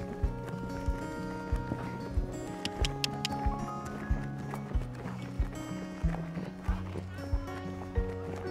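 Background music: held synth-like notes changing in steps over a steady beat of about one thump every two-thirds of a second, with a brief bright chiming figure about three seconds in.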